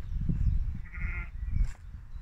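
A sheep bleating once about a second in, a short quavering bleat.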